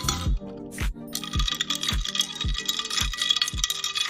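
Background music with a steady beat, over ice cubes clinking against a drinking glass as the iced drink is stirred.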